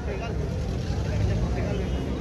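Steady low rumble of street traffic, with unclear voices of people talking over it.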